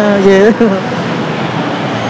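A man's voice in the first half-second, then steady city traffic noise.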